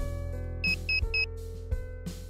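Background music, with three short, high electronic beeps in quick succession from an optical fibre fusion splicer a little over half a second in.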